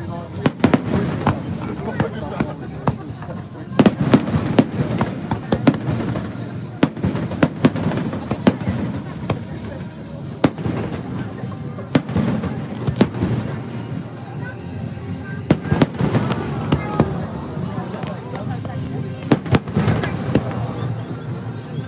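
Aerial fireworks shells bursting: irregular sharp bangs and crackling, with clusters of reports about four, twelve and sixteen seconds in, over a low rumble between them.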